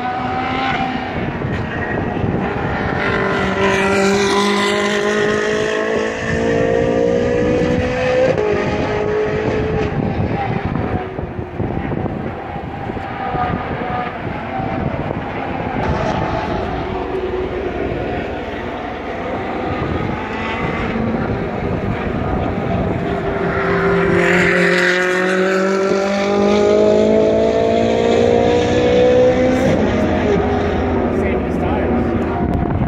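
Race car engines running hard on a circuit, their pitch climbing twice as they accelerate: about 3 to 8 seconds in and again from about 23 seconds to the end.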